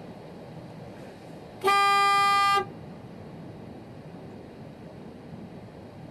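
A vehicle horn sounds once, about two seconds in, a single steady beep just under a second long. Faint outdoor background noise lies beneath it.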